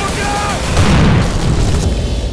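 A film explosion: a deep, loud boom about three quarters of a second in, set off by a remote detonator, rolling on and fading. Just before it, a short high tone.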